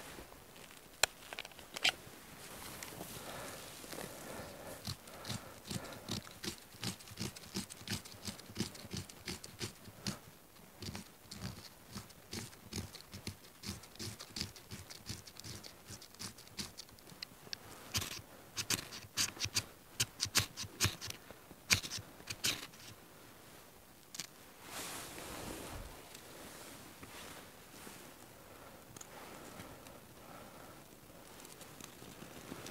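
A bushcraft knife scraping in a long run of short strokes, then sharper, quicker strikes of the knife spine along a ferro rod, throwing sparks to light birch bark tinder. A brief soft rush follows a few seconds later.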